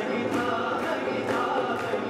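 Live acoustic band music: voices singing together over harmonium, acoustic guitar and keyboard, with a steady percussion beat about twice a second.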